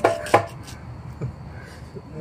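Two sharp metallic knocks about a third of a second apart as a stainless-steel honey extractor drum is tipped over to pour out honey, followed by quieter handling.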